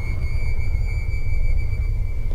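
A helicopter's low, steady rotor rumble.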